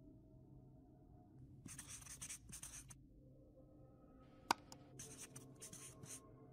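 Faint marker-pen writing sound effect: two runs of quick scratchy strokes, about two seconds in and again near the end, with a single sharp click between them.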